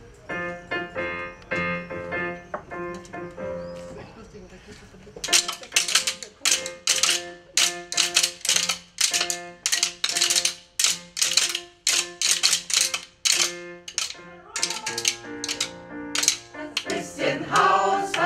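Electronic keyboard playing a chordal intro. From about five seconds in, wooden spoons are clicked together in a steady beat of roughly two strikes a second over the chords. The choir comes in singing near the end.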